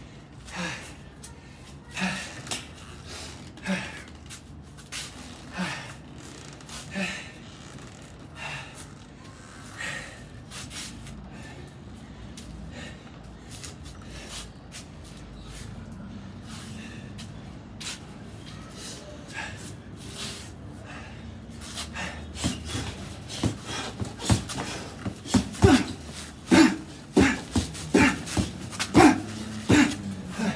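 Gloved punches landing on a heavy punching bag wrapped in duct tape, each with a sharp exhaled breath. The punches come a second or two apart at first, thin out in the middle, then turn into a fast flurry over the last eight seconds or so, the loudest hits of the stretch.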